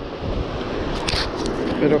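Wind buffeting the microphone over the wash of breaking surf, with a short hiss about a second in.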